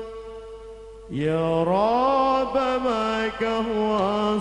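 Solo male voice singing an Arabic sholawat line into a microphone: a held note stops, and after a short lull a new phrase begins about a second in, sliding up from a low note into a long, ornamented held note.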